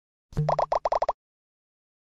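A short sound effect under a second long: a low tone, then a quick run of about six bouncy blips.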